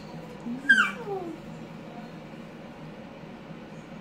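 A young child's brief high-pitched squeal, sliding sharply down in pitch, about a second in.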